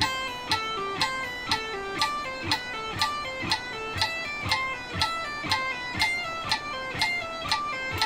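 Electric guitar playing a legato pull-off exercise, pairs of notes at about four a second, each pulled off to the index finger. It runs over a metronome clicking steadily twice a second (120 bpm).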